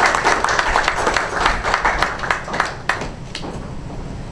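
Audience applauding a speaker's introduction, dying down about three seconds in.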